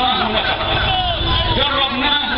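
A man speaking loudly in Arabic into a microphone through a PA system, with a steady low rumble underneath.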